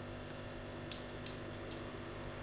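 Faint wet mouth sounds of biting into and chewing a piece of raw honeycomb, a few soft clicks about a second in, over a low steady room hum.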